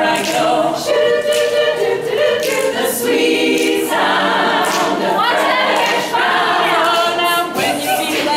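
Women's a cappella choir singing in harmony, several voices moving together through a lively, up-tempo passage with no instruments.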